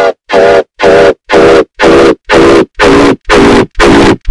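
Heavily distorted, glitch-edited audio: one short pitched sound repeated as a stutter loop, about two pulses a second, harsh and loud with gaps between the pulses.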